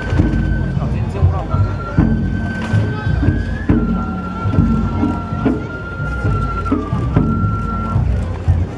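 Festival float hayashi music: a high bamboo flute holds long notes that step down and back up in pitch, while a drum is struck about every one and a half to two seconds. Crowd voices run underneath.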